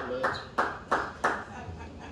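Small-audience applause dying away: a few claps, about three a second, stopping about a second and a half in.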